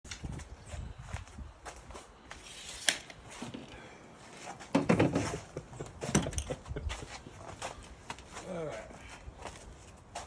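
Scattered clicks and knocks of tools and plastic pipe being handled on a folding worktable, with the loudest thump about five seconds in. A short pitched vocal sound that glides up and down comes near the end.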